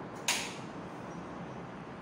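A single short, sharp creak about a quarter second in, dying away within a few tenths of a second, over a steady low hiss.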